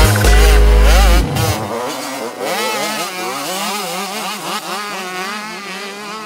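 A heavy electronic bass beat for about the first second, giving way to motocross bike engines revving on a dirt track. Several engines are heard at once, their pitch rising and falling as the throttles open and close.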